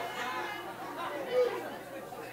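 Indistinct talking: voices speaking without clear words, like chatter in a room.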